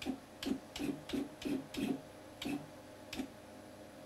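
CNC wood router's stepper motors jogging the spindle in short moves: about eight brief motor buzzes in the first three and a half seconds, as the cutter is brought to the centre of the workpiece for zeroing.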